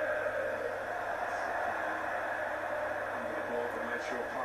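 Steady hiss with a low hum and faint, muffled voices in the background, as from a television playing in the room.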